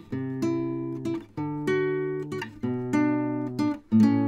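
Guitar music: strummed chords, a new chord about every second and a quarter, each left to ring and fade before the next.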